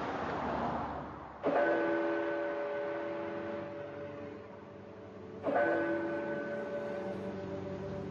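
Soundtrack of a documentary clip played over room speakers: a whooshing swell, then two long held chords of several steady tones. Each chord starts suddenly, the second about four seconds after the first.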